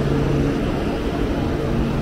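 Steady mechanical hum of a stationary KTX high-speed train beside the platform. A low tone fades out about half a second in, leaving a constant rushing hum.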